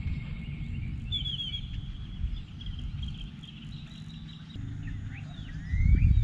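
Birds chirping and calling, with a quick run of high chirps about a second in and a few short rising calls near the end, over a steady low rumble that swells near the end.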